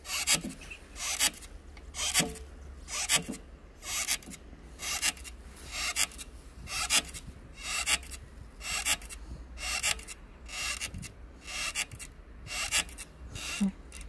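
Outdoor air-walker exercise machine being striden on: a short rasping swish about once a second, in an even rhythm, as the pedal arms swing back and forth.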